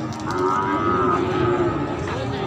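A farm animal's single long, steady call, lasting about a second and a half.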